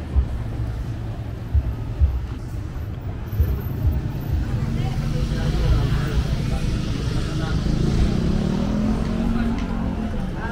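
City street traffic with a car driving close past; its engine hum rises slowly in pitch through the second half. Scattered voices of passers-by and low thumps are heard in the first half.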